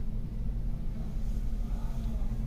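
Steady low background hum, with no distinct event.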